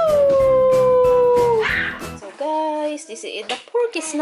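Small white Bichon Frise dog giving one long howl that rises briefly and then slides slowly down in pitch, about a second and a half long.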